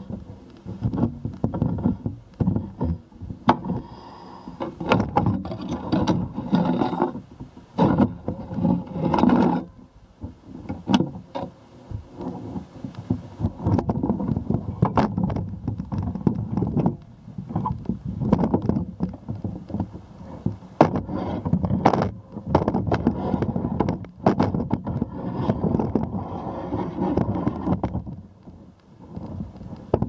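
Handling noise from a telescoping camera pole being raised and swung: a dense, uneven rumble with many sharp clicks, knocks and scrapes.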